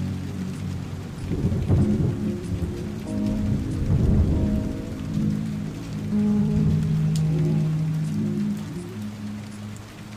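Steady rain with low rumbles of thunder swelling about a second and a half in and again around four seconds, layered over a slow lofi instrumental's sustained low chords.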